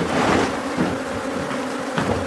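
A swarm of Africanized ("killer") honey bees buzzing steadily around their hive.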